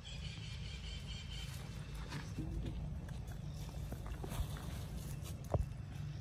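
Macaques moving about on dry leaves and concrete: faint rustles and a few sharp clicks, the clearest near the end, over a steady low rumble.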